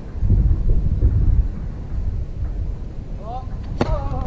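Outdoor tennis court sound: a low rumble on the microphone for the first second and a half, then near the end a single sharp crack of a tennis ball struck by a racket, with a short voice call just before it.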